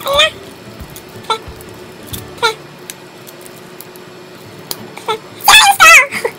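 A young woman's strained vocal sounds of effort and frustration while working a drinking straw out of its plastic wrapper: several brief 'eh' sounds, then a longer, louder whine near the end.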